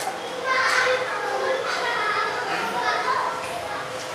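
Children's voices chattering and calling out as they play.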